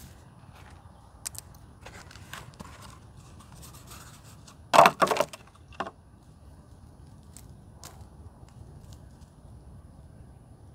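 Hands working a small plastic nursery pot of onion seedlings: soft rustling and scraping, then a quick cluster of sharp crackles about five seconds in as the block of soil and roots is pulled free of the pot, and one more click just after.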